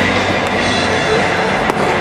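A baseball pops into the catcher's mitt once, a sharp single crack near the end, over steady loud ballpark background noise.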